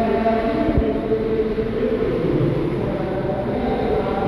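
Steady low hum of a diesel coach idling at the platform, with held tones over a rumble. A single low thump comes about a second in.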